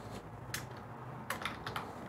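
Computer keyboard keystrokes: a single key click about half a second in, then a quick run of clicks near the end as a word is typed.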